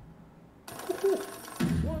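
Online slot machine game sound effect: the music drops away, then about two-thirds of a second in a sudden ringing chime sounds, marking the bonus round's total win.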